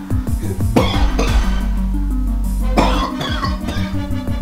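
A man coughing in two bouts, about a second in and again near three seconds, over background music with steady low notes.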